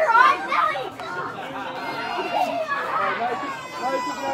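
Several children's voices talking and chattering over one another, the words indistinct.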